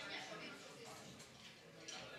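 Low, indistinct chatter of several people talking in a room, with a brief click near the end.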